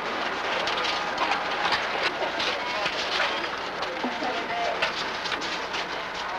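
Busy office background: a murmur of distant voices with steady clicking and clatter, over the hiss of an old film soundtrack.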